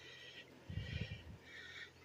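Quiet outdoor background with faint, distant high-pitched bird calls coming and going, and a brief low rumble of handling noise about a second in.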